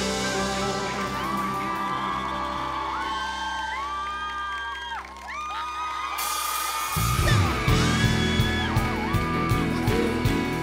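Live band music with a crowd of fans screaming and cheering. A held low note carries the first seven seconds, then drums and bass come in loud as the next song starts.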